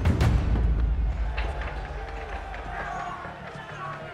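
Action-film soundtrack mix: a heavy crash at the start over a deep rumble that fades, then music with indistinct shouting voices.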